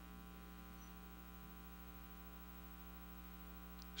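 Faint, steady electrical mains hum with many overtones, carried through the microphone and sound system, and nothing else standing out.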